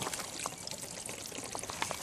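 Warm water being poured onto a car door's frozen rubber seal to thaw a door frozen shut, a steady trickle with a few small splashes.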